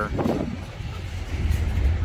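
Freight train's hopper cars rolling past, a steady low rumble of wheels on rail that grows louder about one and a half seconds in.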